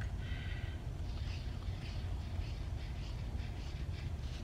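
Red felt-tip marker drawing loops on paper, a faint scratching of quick strokes over a steady low hum, with a brief faint high tone near the start.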